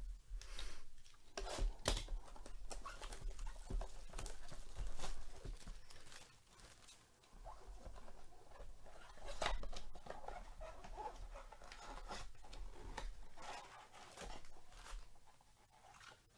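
A cardboard trading-card blaster box being opened by hand and its wrapped card packs pulled out: continuous rustling and scraping of cardboard and pack wrappers, broken by frequent sharp clicks and crinkles.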